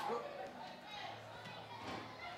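Faint voices over the background noise of an open-air football ground.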